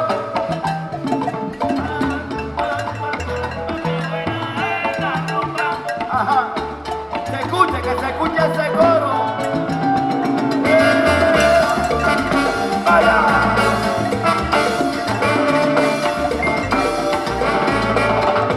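Live salsa band playing an instrumental passage: bass, percussion and melody instruments together, with no singing. The band grows fuller and brighter about ten seconds in.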